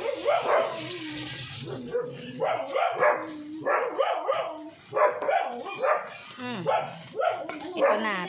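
Small pet dogs barking and whining over and over, excited calls of dogs waiting to be fed.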